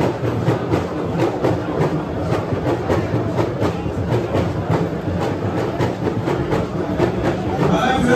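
A steady rhythmic beating, about four strikes a second, over a low steady hum and crowd noise.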